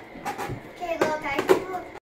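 Short, faint bursts of a young child's voice, higher pitched than an adult's, with two brief knocks about a second and a second and a half in.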